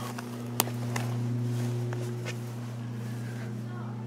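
A steady low mechanical hum, with a sharp click about half a second in and a few fainter ticks.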